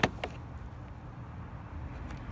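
A couple of light clicks about a quarter of a second apart as a multimeter's red test lead is pulled from its jack, then a steady low rumble.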